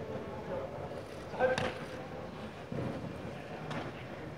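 Background chatter of many voices in a large indoor field house. About a second and a half in comes a short, loud shout together with a sharp slap, and near the end there is another sharp slap.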